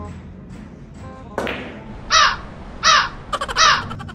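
A crow cawing three times in quick succession, loud harsh calls a little under a second apart, dropped in over the game as a comic sound effect. Just before the caws comes a single sharp click of a cue striking a ball, with background music underneath.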